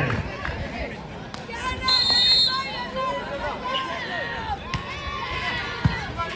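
Crowd and players chattering and calling out, with a referee's whistle blown once about two seconds in, a short steady shrill note. Just before the end comes one sharp slap, a volleyball being struck on the serve.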